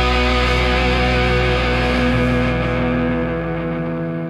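The final chord of a punk-metal song: distorted electric guitars and bass held and left ringing out, slowly fading away after the drums have stopped.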